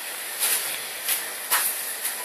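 Steady frying hiss from thin crepes cooking in pans over lit gas burners. Three brief light knocks come during it.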